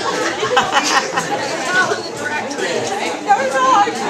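Many people talking at once: indistinct crowd chatter, with several voices overlapping.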